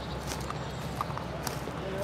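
Footsteps on leaf litter and grass, a few soft, faint crunches about every half second, over a steady low background hum.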